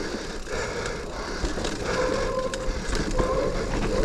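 Mountain bike rolling fast down a dirt singletrack: tyre noise on the dirt, short knocks and rattles over bumps, and wind on the microphone. A faint steady whine comes in about halfway.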